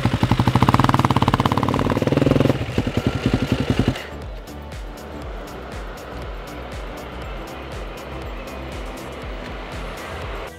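Supermoto motorcycle engine revving hard for about the first four seconds, a fast rattling run of firing pulses. Then it cuts to quieter background music.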